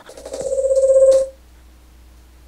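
A buzzing, rapidly pulsing electronic tone swells loudly for about a second and then cuts off suddenly, leaving a low steady hum.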